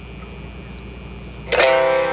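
Low amplifier hum, then about one and a half seconds in a single electric guitar chord strummed through the amp, ringing for about a second with a bright, twangy tone.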